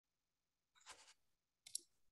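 Near silence, broken by two faint short clicks, one about a second in and one near the end.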